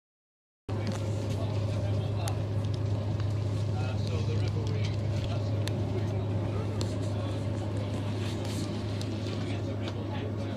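Inside a moving passenger train carriage: the steady low hum and rumble of the train running, with scattered small clicks and rattles, starting just under a second in.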